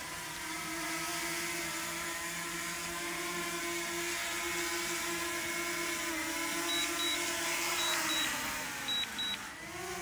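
DJI Mini 2 drone's propellers whining steadily as it hovers just above the ground close by. Near the end the pitch falls as the motors spin down, as they do when it lands. Quick double beeps sound several times near the end.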